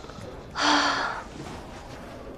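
A young woman's pained gasp: one short breathy cry of about half a second, a little past half a second in.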